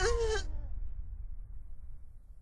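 A short strained groan from an animated character in the first half second, over the low rumble of a heavy thud dying away. The rumble fades steadily toward near silence.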